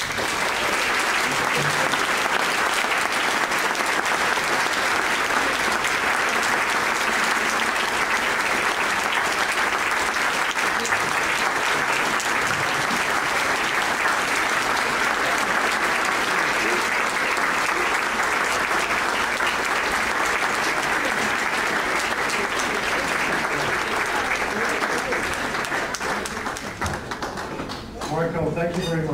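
Audience applauding, a long steady ovation that starts at once and eases off near the end.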